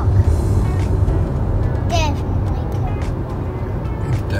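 Road and engine noise inside a moving car's cabin, a steady low rumble, with a child's high voice briefly about two seconds in.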